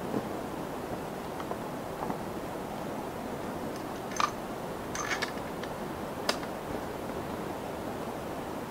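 Steady low hiss of outdoor background noise, with a few faint short clicks scattered through it.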